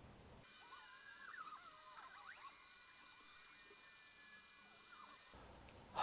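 Near silence, with faint high warbling chirps and glides and a faint steady high tone in the background.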